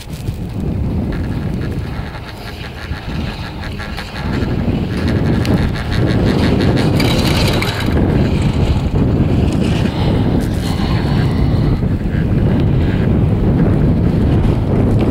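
Wind buffeting the microphone while riding a chairlift, a steady low rumble that grows louder about four seconds in.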